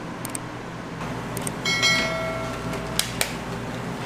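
Metal kitchenware knocked once about halfway through, ringing for about a second, then two sharp clicks, over a steady room hum.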